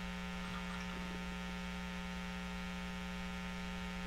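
Steady electrical mains hum in the recording, a buzzy tone strongest on one low pitch, unchanging throughout.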